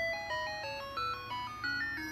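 VTech Classmate Slate learning toy's speaker playing its electronic shutdown jingle: a short tune of plain beeping notes, one at a time, stepping down in pitch and then climbing again near the end.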